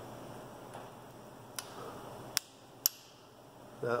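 Three short, sharp metallic clicks, spread over the middle and later part, as steel gearbox parts of the reverse gear assembly are handled and knocked together in the hands, over quiet shop room tone.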